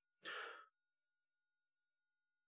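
A short, soft breath or sigh from a person about a quarter second in, then near silence.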